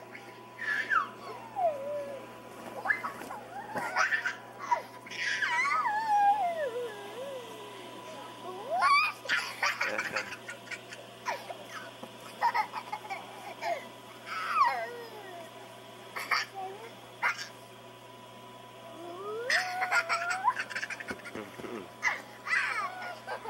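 Young children squealing and laughing as they play, in a string of high, sliding shrieks and short yelps with brief pauses between them, over a steady low hum.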